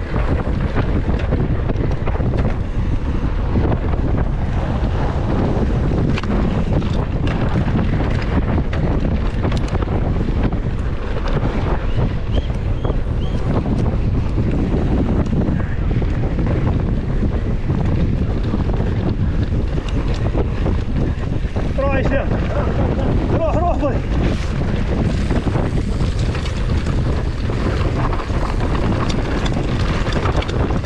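Wind buffeting the rider's action-camera microphone on a downhill mountain bike, with the tyres and bike rumbling and rattling steadily over a dry dirt track. A brief voice cuts through about two-thirds of the way in.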